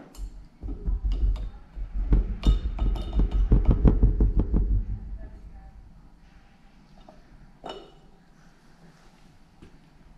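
Paintbrush being rinsed in a glass water jar: a quick run of clinks and taps against the glass over the first five seconds or so, then a single click near eight seconds.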